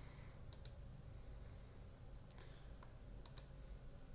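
Faint computer mouse clicks, a few of them in quick pairs, over near-silent room tone.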